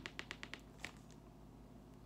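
Faint handling noise of an LP in a clear plastic outer sleeve: a quick run of small ticks and crinkles in the first second, then quiet room tone.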